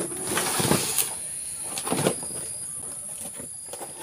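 Rustling and scraping with a few knocks as a cardboard box holding the parts of a cordless brush cutter is pulled close and handled, loudest about a second in and again around two seconds. A steady high-pitched whine runs underneath.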